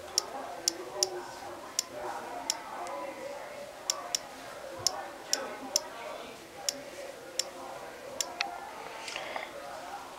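iPod Touch on-screen keyboard key clicks: irregular single sharp ticks, about one or two a second, as letters are tapped while typing a web address. Faint voices murmur underneath.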